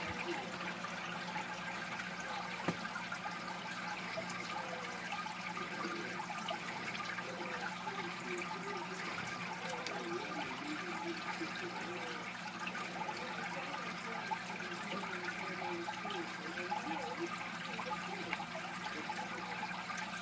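Running aquarium filter: water trickling and bubbling steadily, with a steady low hum underneath.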